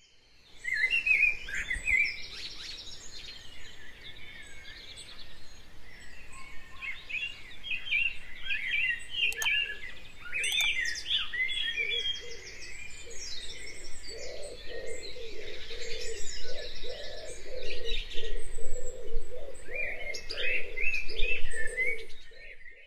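Several birds chirping and singing in quick, varied phrases, with a lower repeated call joining in about two-thirds of the way through.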